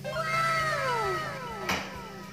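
A cat's meow: two long falling meows overlapping each other, with a sharp click near the end.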